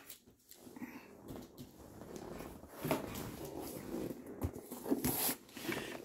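Rustling and a few light knocks as a shipping package is picked up and handled close to the microphone. The noise grows louder about three seconds in.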